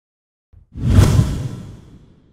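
A whoosh transition sound effect with a deep low boom. It swells in suddenly a little under a second in and fades away over the next second.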